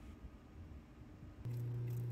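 Faint room tone, then about one and a half seconds in the steady low hum of a lapidary grinding machine's motor running cuts in suddenly and holds.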